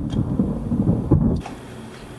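Thunder rumbling in a lightning storm, heard from inside a car. The rumble cuts off about a second and a half in, leaving a faint steady hiss.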